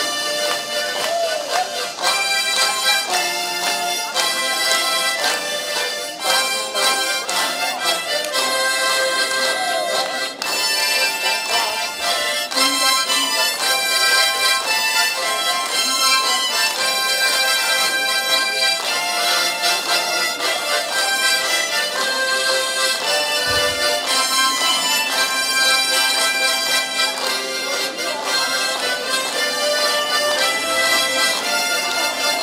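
A harmonica ensemble of about a dozen players playing a tune together.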